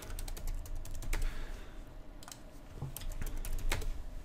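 Typing on a computer keyboard: a quick run of key clicks in the first second, a few scattered clicks, then another run near the end.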